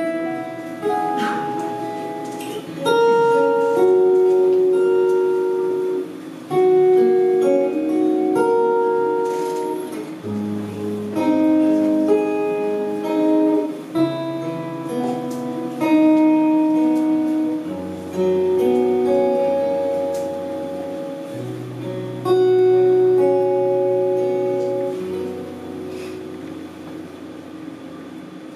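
Guitar playing the instrumental intro of a slow ballad: a picked melody of single notes over low, held bass notes, before the vocal comes in.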